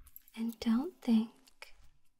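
A woman's soft voice making three short voiced sounds in quick succession about half a second in, with a few faint clicks around them.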